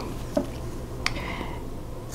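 Small scissors cutting through stitched cotton squares, with one sharp snip about a second in, over a low steady hum.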